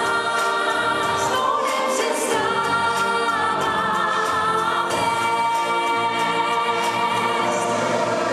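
A pop song sung into a microphone over backing music, with long held vocal notes.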